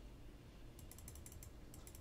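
Faint computer mouse clicks, a quick run of about eight in the second half, over near-silent room tone, as the Zoom In button is clicked repeatedly.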